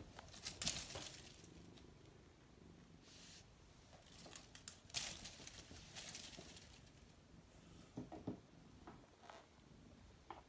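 Faint rustling of leaves and soft, scattered taps and scuffs as a cat paws at the branches of a small potted fruit tree, in irregular flurries.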